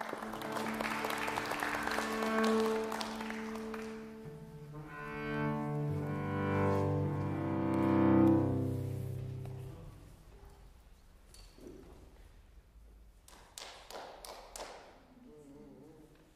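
Cello and piano playing slowly: long held cello notes, with a deep low note entering about six seconds in, then fading to quiet. A few soft clicks come near the end.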